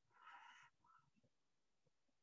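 Near silence, with one faint short sound in the first half second.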